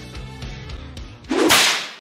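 Quiet background music, then about 1.3 seconds in a loud whoosh sound effect marking a scene transition. It lasts about half a second and cuts off sharply.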